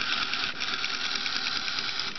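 A small electric motor running steadily: a high buzz with a fast, even ticking.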